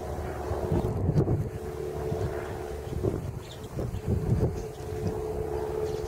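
Wind buffeting the microphone in irregular gusts, strongest about a second in and again after four seconds, over a steady hum.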